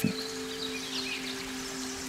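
Soft meditative background music: a steady drone of two held low tones, with faint high chirps over it.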